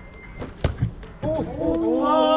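Three sharp percussive hits in quick succession, the middle one loudest. A little past halfway a man's voice comes in with pitched, drawn-out sung notes.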